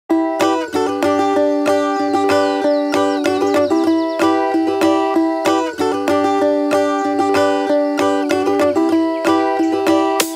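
Instrumental folk intro: a plucked string instrument playing a quick run of notes over a steady held low tone, with no drums yet.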